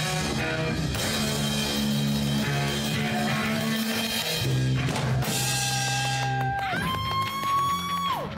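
Live rock band playing: electric guitars over a drum kit. From about five seconds in come two long held notes, the second higher, which drops away at the very end.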